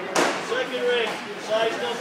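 People's voices talking in a large room, with one sharp smack just after the start.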